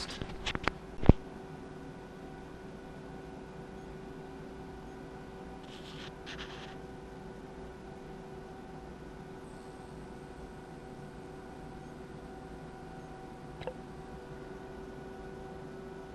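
A sharp click about a second in, then a steady electrical hum with several overtones from the amplifier test bench while the amp runs a power test into the dummy load.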